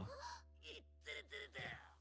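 A faint run of short breathy gasps, four or five in a row, after a drawn-out voice fades at the start.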